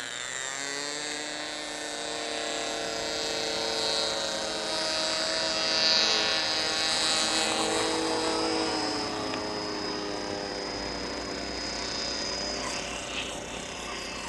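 AP .15 nitro glow engine of a radio-controlled model plane, a small steady buzz at low throttle through a landing approach. It grows louder as the plane passes close about six seconds in, then dips in pitch and runs on as the plane touches down and rolls to a stop on grass.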